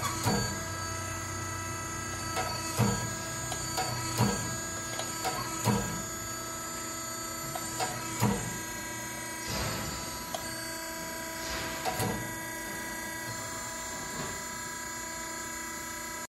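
A Haeger 618 hardware insertion press idling under power, its drive unit humming steadily with several fixed tones. Sharp knocks sound over it every second or two, mostly in the first half. Two brief rushing sounds come a little past the middle.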